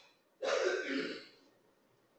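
A woman clearing her throat once, about a second long.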